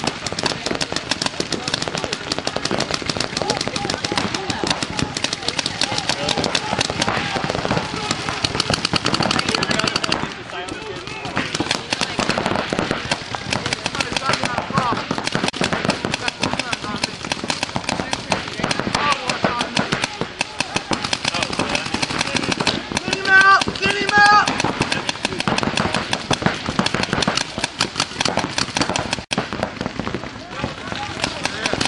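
Rapid paintball marker fire from several guns, a dense stream of sharp pops that runs almost without a break, easing briefly about ten seconds in. Shouted voices rise over the shooting, loudest in two calls about three-quarters of the way through.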